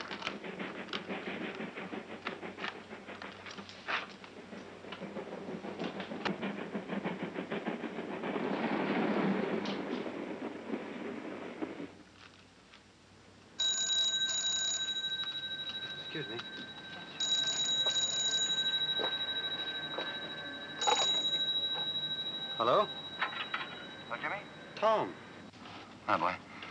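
An old desk telephone's bell ringing in repeated bursts, three rings about three and a half seconds apart, the last one short, starting about halfway through. Before it comes a rumbling noise that swells and then dies away into near quiet.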